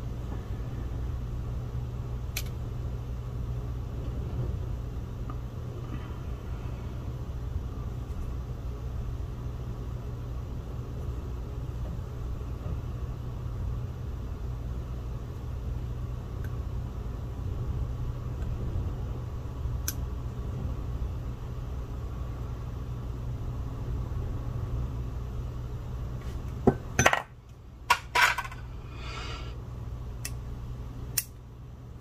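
Steady low hum with a couple of small clicks, then, near the end, a quick cluster of sharp metallic clicks from metal nail tools (cuticle nippers) being handled at the nail.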